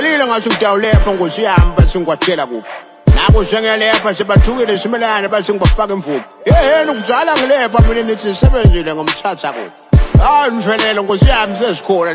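Hip-hop track: a voice rapping over a beat with low kick-drum hits.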